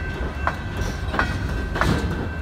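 Freight train of hopper cars rolling past: a steady low rumble of wheels on rail, with a click about every two-thirds of a second as wheels cross rail joints, and a thin steady high tone over it.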